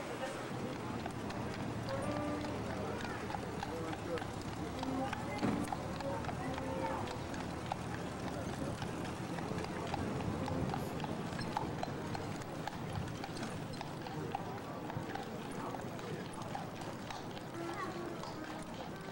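A carriage horse's hooves clip-clopping on a paved street, with voices in the background.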